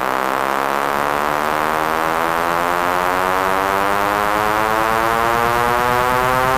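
Electronic music: a sustained synthesizer chord slowly rising in pitch, with a rapid low pulsing beat coming in about a second in.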